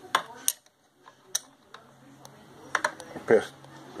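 A few light metallic clicks and clinks as a small steel wrench is handled against the metal frame of a Dillon reloading press. The sharpest clicks come in the first half-second, then scattered faint ticks.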